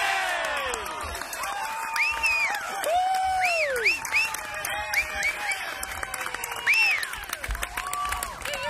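Golf gallery cheering a holed putt: loud whoops and shouts rising and falling over steady clapping.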